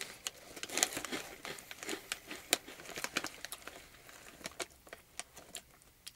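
Lotte shrimp/squid crackers being chewed with the mouth closed: a run of irregular crisp crunches and crackles, thinning out toward the end.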